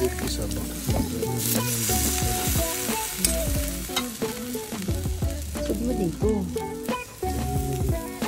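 Chicken wings sizzling over hot charcoal on a kettle grill, with sharp clicks of metal tongs and a spatula on the grate as the pieces are turned. Music with a melody and bass line plays underneath.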